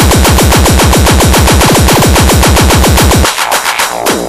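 Terrorcore track built on a very fast run of distorted kick drums, about nine hits a second, each dropping in pitch. The kicks cut out briefly near the end.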